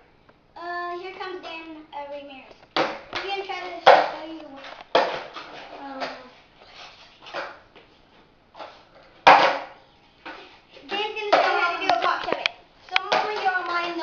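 Children talking and calling out, with a few sharp clacks of a skateboard hitting a concrete floor.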